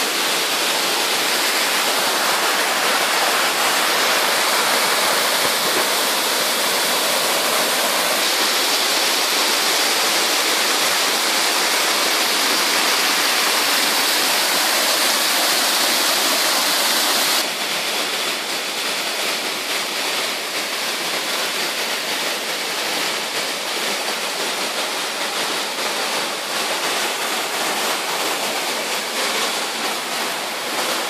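Waterfall rushing steadily as water cascades over rock into a pool. About 17 seconds in the sound suddenly drops a little in level and thins at the top, as the view shifts to another part of the falls.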